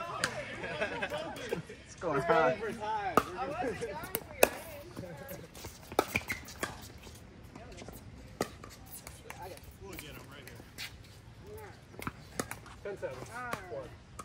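Pickleball paddles hitting a plastic ball: scattered sharp pops at irregular intervals, the loudest about four seconds in, with people talking during the first few seconds.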